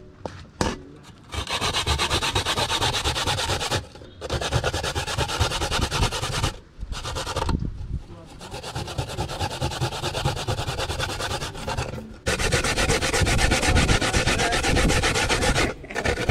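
Fresh coconut meat being grated by hand on a punched-metal grater into a steel bowl: a rapid rasping scrape in several long runs, broken by short pauses, and quieter for a few seconds in the middle.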